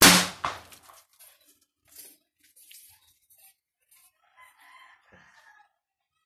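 Homemade PVC pipe gun firing once: a single loud bang right at the start that rings away over about a second.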